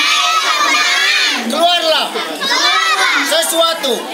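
A group of young children shouting a chant together in unison, loud and without a break.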